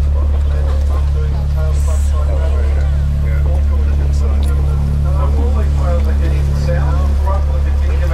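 Ambient electronic music made on a modular synthesizer: a deep, steady bass drone under rhythmically pulsing bass notes, with snatches of layered spoken voices.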